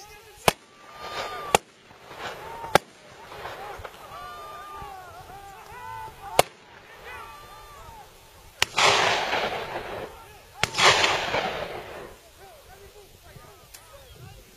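Six gunshots fired at a running wild boar, spaced irregularly over about ten seconds. The last two shots are each followed by a long rolling echo.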